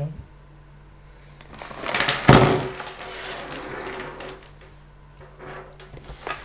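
Headphones, cables and a cardboard box being picked up and moved about on a wooden table. A burst of clattering and rustling comes about two seconds in, then softer handling noise and a few light knocks.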